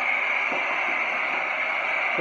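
Acetylene torch with a number three tip burning with a steady hiss.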